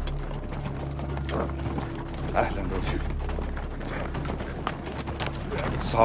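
Indistinct men's voices with scattered clicks and knocks over a steady low hum.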